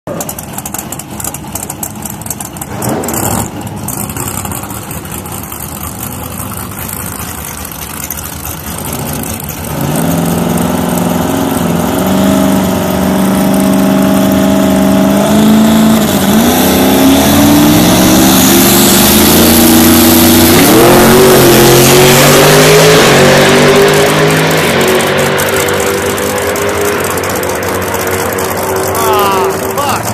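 1974 Nissan Skyline drag car's engine: quieter for the first few seconds, then loud about ten seconds in, held at steady high revs on the line. About sixteen seconds in it launches and climbs in pitch through several gear changes, then fades as the car runs away down the strip.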